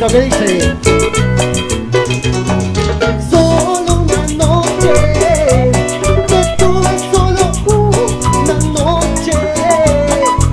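A cumbia band playing live: a quick, steady percussion beat over bass, with a wavering lead melody above it.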